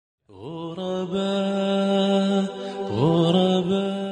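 Wordless chanted vocal intro: two long held notes, each sliding up into pitch at its start, the second beginning about three seconds in.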